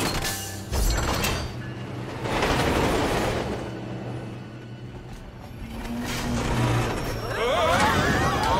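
Film soundtrack of a subway train: a heavy low thump a little under a second in, then the train rushing along its track over music, building again toward the end. Near the end the passengers start yelling and screaming as they are thrown about in the car.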